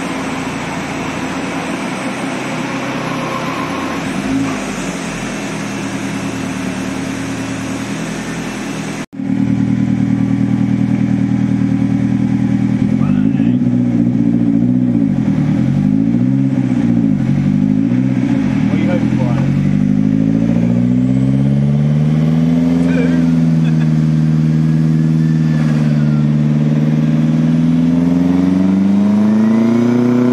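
The Saab 900 Turbo's 16-valve turbocharged four-cylinder engine. A steady rushing noise gives way at a sudden cut to the engine being blipped up and down about four times in quick succession, then running at low revs with slow gentle rises.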